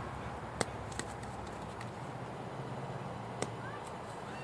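A few sharp knocks, two louder ones about three seconds apart, over a steady low outdoor hum.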